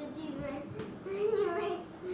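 A child's voice in a sing-song, half-sung vocalisation, rising and falling in pitch, with a longer held, sliding note in the second half.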